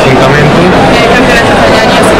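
Interview speech: a man talking over a loud, steady background noise.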